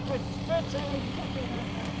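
Faint background chatter of distant voices over a steady low hum.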